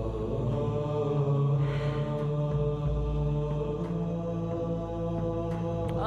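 Background music: slow, sustained droning tones held steadily, chant-like in character.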